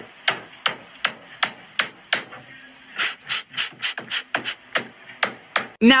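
Renovation work banging on a house wall: sharp, evenly spaced hammer-like blows, about three a second, with a short break a little after two seconds in.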